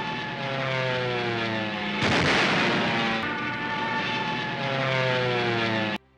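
Vintage film soundtrack of a biplane's propeller engine droning past, its pitch falling. A louder rush of noise comes about two seconds in, and then a second pass falls in pitch the same way.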